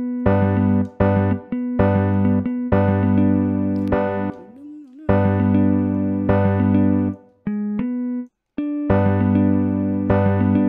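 Chords from a software instrument in FL Studio, playing back a three-note chord progression. Short repeated chord hits alternate with longer held chords, and there is a brief gap about eight seconds in.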